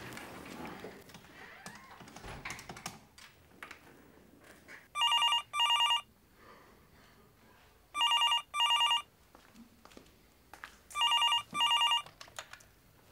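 A landline telephone ringing with an electronic double ring, three times, about three seconds apart. Faint clicks come before the first ring.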